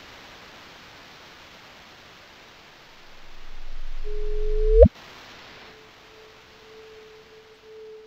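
Synthesized sound design over a steady hiss. A low rumble and a steady tone swell for about two seconds, then the tone sweeps sharply upward in a quick chirp and cuts off suddenly. It is styled on the sonified gravitational-wave chirp of two black holes merging. A faint steady tone lingers afterwards.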